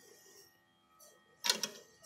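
A short sharp click, two quick strokes about one and a half seconds in, over faint room sound.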